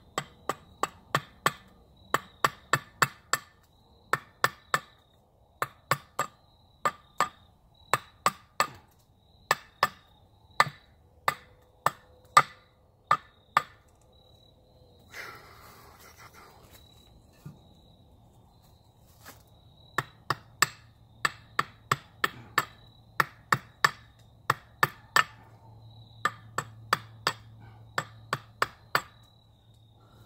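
Hatchet hewing a dry, knotty Osage orange axe-handle blank: sharp chopping whacks in quick runs of two to four, with a pause of about five seconds midway. Crickets chirp faintly behind.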